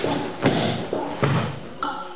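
Three or four dull thuds of bare feet stamping on a padded mat as two swordsmen step and lunge through a paired sword kata.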